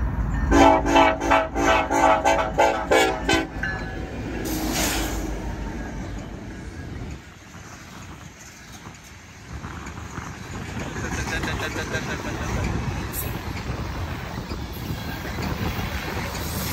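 BNSF EMD SD70ACe locomotive's air horn sounding a rapid string of about nine short blasts over the first few seconds. Then the loaded coal train's hopper cars roll past, rumbling steadily, steel wheels on rail.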